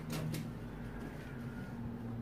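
Scissors cutting through pattern paper, with a couple of crisp snips in the first half-second, over a steady low hum.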